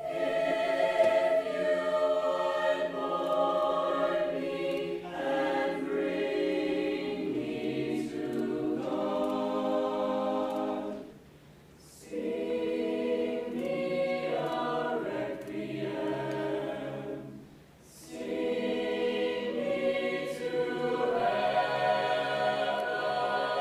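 Mixed choir singing a cappella in sustained chords, with two short breaks between phrases, about eleven and seventeen seconds in.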